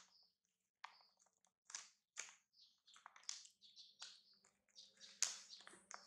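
A plastic snack wrapper crinkling faintly in irregular crackles as a baby macaque paws at it, the sharpest crackle about five seconds in.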